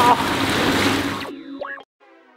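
Echoing indoor swimming-pool noise, water splashing and lapping, which cuts off abruptly just over a second in. A brief rising tone and a faint steady tone follow.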